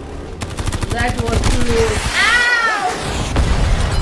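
Action-film sound effects: a rapid burst of automatic gunfire starting about half a second in and lasting about a second and a half, over a heavy low rumble. It is followed by a high tone that rises and falls.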